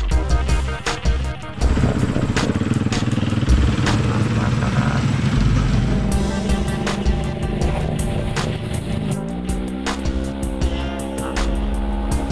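Electronic music with a steady beat mixed over rally motorcycle engines running and revving. About nine seconds in, an engine's pitch rises and then holds steady.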